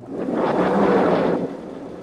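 A vertical sliding chalkboard panel pushed up in its frame: a loud rolling rumble for about a second and a half, then going on more quietly.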